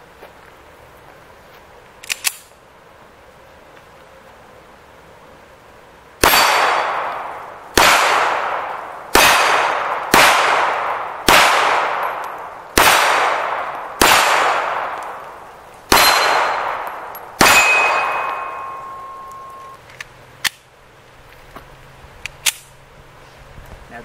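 Nine shots from a Colt Competition 1911 pistol in 9mm, fired at an unhurried pace one to two seconds apart, each report trailing off in an echo. A high ringing tone lingers for a moment after the last shot.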